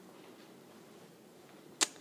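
Faint room tone in an empty room, broken once near the end by a single sharp click.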